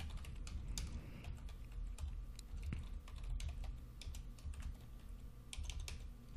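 Typing on a computer keyboard: a faint, irregular run of keystrokes over a steady low hum.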